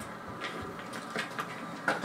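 A few soft, irregular thuds, about four in two seconds, over a faint steady hiss.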